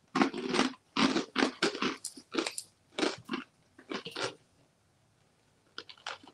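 Two people chewing mouthfuls of hard, extra-crunchy fried falafel-flavoured snack sticks: a quick, irregular run of crunches that thins out and stops after about four seconds.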